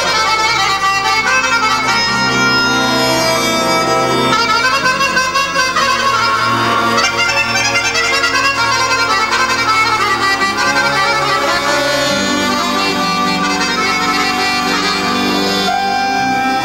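Piano accordion playing a fast, busy folk melody in the Banat style, with sustained low bass notes from the band underneath.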